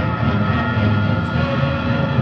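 A film soundtrack played loud over cinema speakers: a steady, dense low rumble with held tones, with no break.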